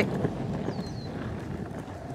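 Electric skateboard wheels rumbling over a textured stamped-concrete path, with wind on the microphone. The rumble eases off gradually as the board brakes after a sprint.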